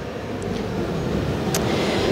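Steady low rumble of background noise in a large event hall, slowly growing louder, with a faint click about half a second in and a short tick about a second and a half in.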